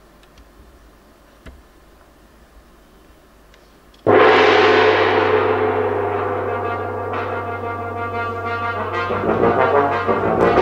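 A large orchestral gong is struck once about four seconds in and rings on, slowly fading, with a steady low tone under it. Brass instruments come in near the end.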